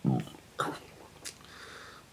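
A man clearing his throat into his fist, two short rasps about half a second apart.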